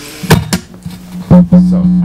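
Acoustic guitar being handled: a couple of sharp knocks on the body, then a louder bump about a second in that sets the strings ringing on a steady low note to the end.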